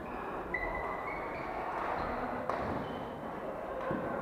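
Badminton rackets striking the shuttlecock: two sharp cracks about a second and a half apart, the second near the end. Short high squeaks of court shoes on the floor come in the first second or so, over the steady background of a large sports hall.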